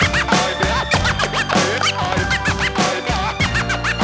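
Hip hop DJ scratching on a Denon DJ deck over a steady beat: many quick back-and-forth scratch swipes, sliding up and down in pitch.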